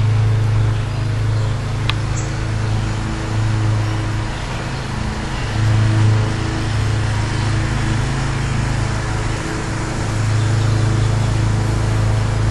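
A steady low machine hum, like an idling engine or a running motor, that swells and eases every few seconds, with one sharp click about two seconds in.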